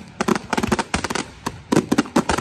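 Fireworks display with aerial shells bursting in a rapid string of bangs and crackles, thinning out about halfway through and then a dense cluster of loud bangs near the end.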